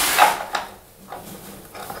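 Tiled linear shower-drain cover being set into its metal drain channel on adjustable raising pieces: a short scraping knock near the start, then quieter handling noises as it is settled.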